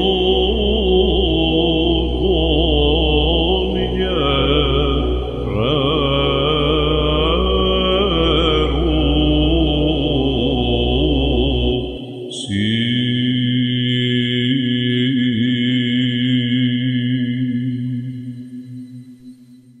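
Solo Byzantine chant: a male cantor singing a melismatic hymn over a steady electronic ison drone. About twelve seconds in, the melody and the low drone stop and a single steady held tone follows, fading at the end.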